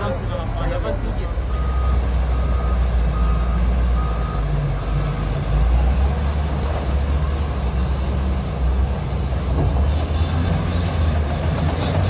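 Heavy Caterpillar diesel construction machines running with a steady low rumble, and a backup alarm giving about five evenly spaced beeps in the first few seconds as a machine reverses.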